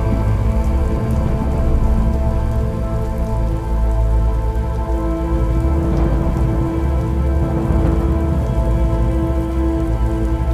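Steady rain ambience laid over slow, sustained instrumental music with held notes and a deep low drone; a new held note comes in about five seconds in.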